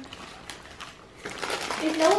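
Quiet room with a few faint clicks, then a voice starting near the end.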